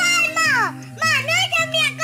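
A young girl's high-pitched voice in several quick utterances with sliding pitch, over steady background music.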